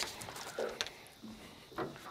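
Faint knocks and rustling of a landing net holding a dusky flathead as it is brought over the side of a boat and onto the deck, with a few small clicks.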